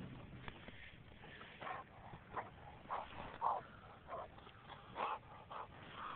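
A dog making a series of short, quiet sounds, about half a dozen spread over a few seconds.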